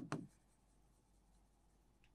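Faint scratching of chalk writing a word on a blackboard, with a brief click right at the start; otherwise near silence.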